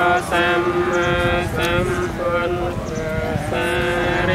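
Buddhist monks chanting together in unison, a steady recitation held on one low pitch with the syllables changing every fraction of a second.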